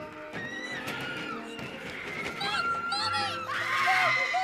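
Orchestral film score under high, arching screams of frightened people, ending in a loud panicked shout near the end.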